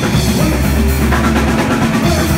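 Live rock band playing loud: drum kit to the fore, bass drum and snare, over distorted electric guitars, with a quick run of drum hits in the second half.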